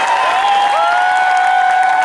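Audience applauding and cheering at the end of a live saxophone duet. A long, steady high note is held over the clapping from about a second in.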